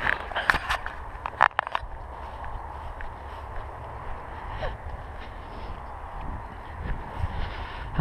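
Footsteps and rustling while walking through long grass, with a cluster of sharp clicks and rustles in the first two seconds. Under them runs a steady low rumble of wind on the microphone.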